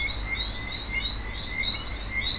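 A short high chirping call repeated roughly every half second, over a steady low rumble.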